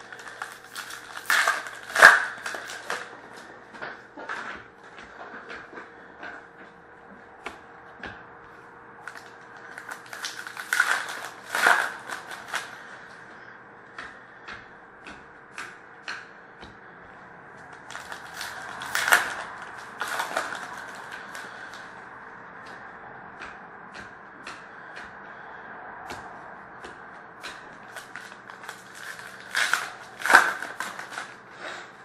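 Panini Prizm hockey card packs being torn open and the cards handled and sorted by hand: short bursts of wrapper crinkling and tearing about two seconds in, again around eleven to twelve seconds and nineteen to twenty seconds, with scattered light clicks of cards between. A faint steady hum lies under it all.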